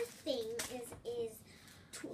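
A girl's voice making a few short, wordless sounds, then faint handling noise as a plastic sticker sheet is moved about in the hands.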